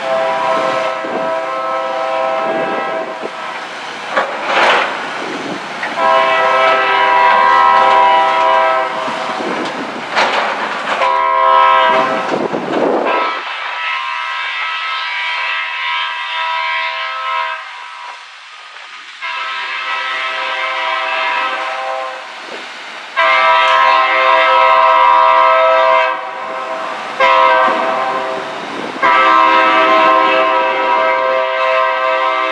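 Locomotive air horn on the lead unit, BNSF 1691, an EMD SD40-2, sounding a series of long blasts with shorter ones between: the warning sequence for a grade crossing as the train approaches. There is a quieter gap of several seconds in the middle.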